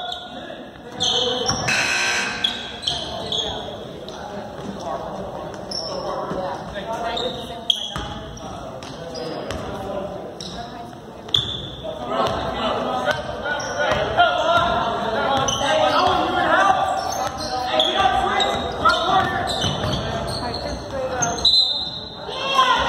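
A basketball bouncing on a hardwood gym floor during play, with shouting voices echoing in a large gymnasium, busier in the second half.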